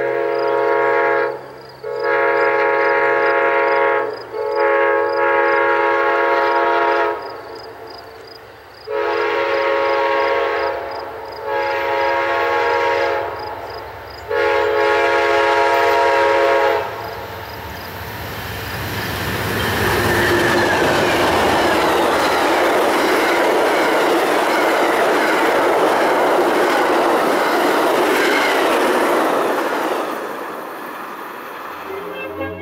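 Amtrak GE P42DC diesel locomotive sounding its horn for a grade crossing: a series of long blasts with a few shorter breaks, over a crossing bell ringing steadily. From about 18 seconds in, the locomotive and passenger cars pass with a loud, steady rush of engine and wheel noise.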